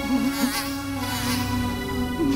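Housefly buzzing, its pitch wavering up and down, over a steady synthesizer drone from the film score.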